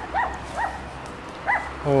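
A dog yipping: three short, high yips spaced out over a couple of seconds.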